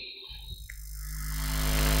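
Electrical hum from a public-address sound system: a steady low buzz with many overtones that fades in over about the first second and a half, then holds.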